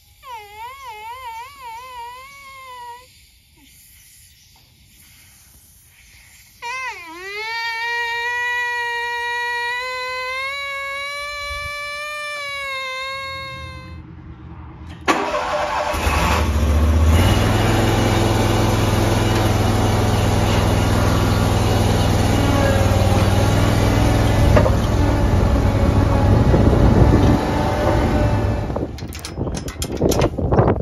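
A riding lawn mower's engine starts about halfway through and runs loud and steady with a deep hum. Before that come two spells of a high whine, the first warbling quickly, the second dipping and then slowly rising.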